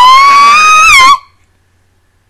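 A woman's loud, very high-pitched shriek of shock, held on one pitch and breaking off about a second in.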